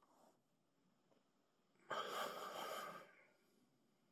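A single long breath exhaled close to the microphone, lasting about a second and a half, starting about two seconds in.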